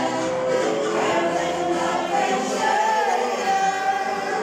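Amateur senior choir of mostly women's voices singing together in harmony, with long held notes.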